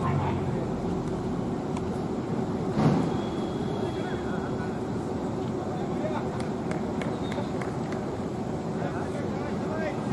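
Open-air cricket ground ambience: voices of players and spectators in the distance over a steady low hum, with a brief louder swell about three seconds in.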